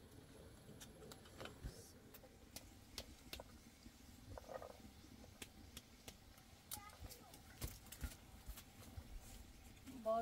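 Near silence with faint, scattered small clicks and crackles of hands breaking open pomegranates and picking the seeds onto plates, and a brief faint murmur about four and a half seconds in.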